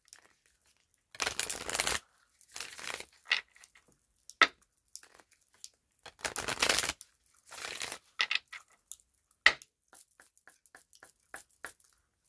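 A deck of tarot cards being shuffled by hand: several papery rustling bursts of the cards sliding and riffling, each lasting up to about a second, with small sharp clicks and taps of cards between them.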